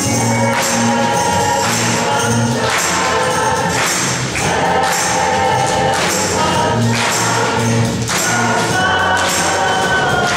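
A handbell choir playing a lively song while a congregation sings along and claps.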